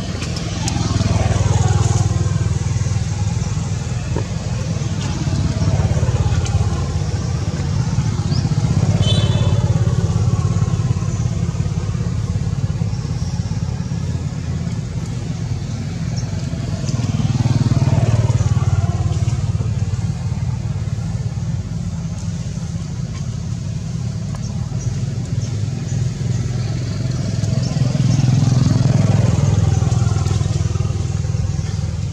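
Motorbikes and other road traffic going past, a steady low rumble that swells and fades several times as vehicles pass one after another.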